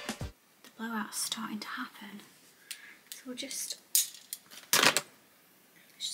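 A woman's voice speaking softly, in short low phrases, with two sharp clicks about four and five seconds in.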